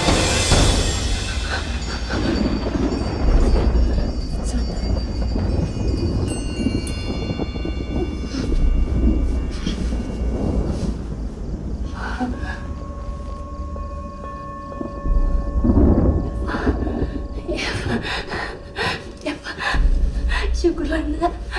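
Horror-film soundtrack: a tense score with a low rumble and held, eerie high tones, punctuated by sudden loud hits at the start, about three seconds in, and about three-quarters of the way through.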